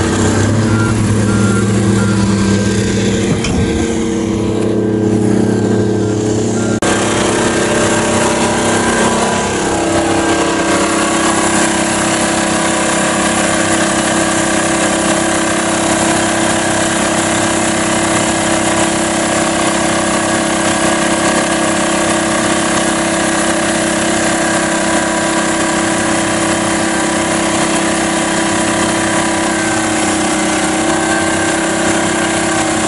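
Heavy diesel engines running steadily. About seven seconds in the sound changes abruptly to a steadier drone with a hum, and a slightly higher steady tone joins it a few seconds later.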